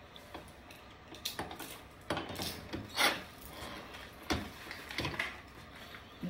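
Irregular clinks, knocks and rattles of small metal objects being picked up and set down, with the loudest clatter about three seconds in.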